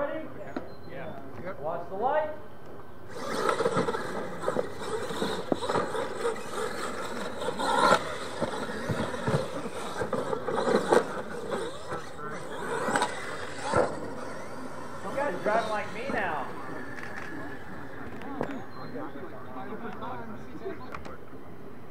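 RC monster trucks racing on a dirt track: motor whine and tyre noise start about three seconds in and run for about ten seconds, with people talking around it.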